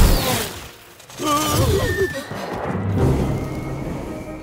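Film sound effect of a small rocket firing: a loud rushing blast right at the start that dies away within about a second, over background music.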